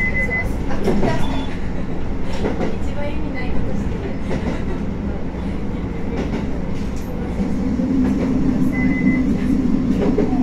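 Heard from inside the cab of a JR Hokkaido H100 diesel-electric railcar rolling slowly: a steady rumble of the wheels on the rails with scattered clicks. There are two short high tones, one at the start and one about nine seconds in. A low hum from the drive grows stronger in the last couple of seconds.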